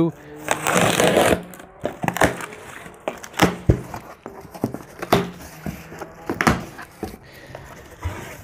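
Packing tape ripped off a cardboard box with a rush of noise lasting about a second, then the box's cardboard flaps opened and handled with scattered knocks and crinkles.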